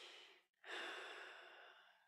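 A person's deep breath close to the microphone: the tail of an inhale, then a longer exhale like a sigh that starts strong and fades away over about a second and a half.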